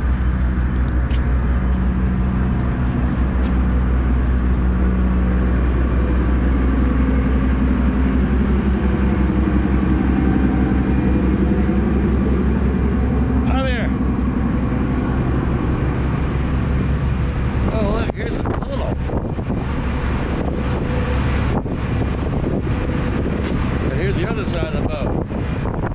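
Steady low drone of a car ferry's engines heard from its vehicle deck, with wind buffeting the microphone over the last few seconds.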